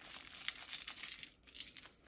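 Paper crinkling and crackling in the fingers as a small perfume sample card is rolled up, in many quick little crackles that fade out near the end.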